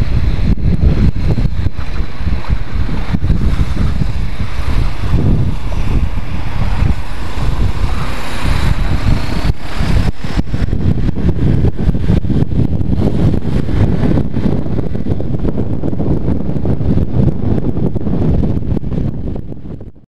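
Wind rushing over the microphone of a motorcycle on the move, with road and traffic noise beneath; it fades out near the end.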